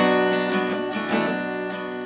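Acoustic guitar, capoed at the 2nd fret, strummed: a firm strum at the start, then lighter strums about every half second while the chord rings.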